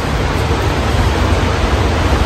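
Steady loud noise of wind and heavy rain in a storm, with wind buffeting the microphone in a low rumble.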